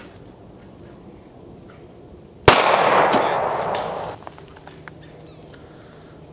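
A single gunshot about two and a half seconds in, followed by a loud rushing noise that lasts about a second and a half before dropping away.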